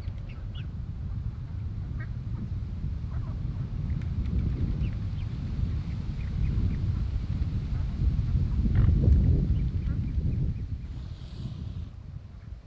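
Wind rumbling on the microphone, loudest about nine seconds in, with a few faint short calls from a mute swan family of an adult and cygnets feeding at the water's edge.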